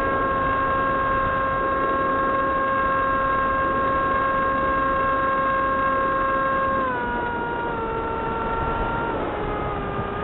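Motor and propeller of an FPV model airplane heard from its onboard camera: a steady whine over a rush of air, dropping in pitch about seven seconds in and again near the end as the motor slows.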